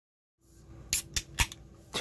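Aluminium beer can being opened by its pull tab: three sharp clicks about a quarter second apart as the tab is levered up and the can cracks open.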